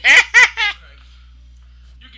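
A man laughing out loud: three short, loud, high-pitched bursts of laughter in the first second.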